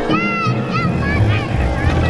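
A low engine rumble, fitting an auto-rickshaw's small engine running. Several high, wavering tones that rise and fall sound over it in the first second and a half.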